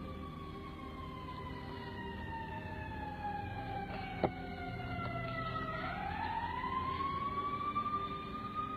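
Emergency-vehicle siren on a slow wail: its pitch falls steadily for about six seconds, then climbs again near the end. A single sharp click sounds a little past the middle.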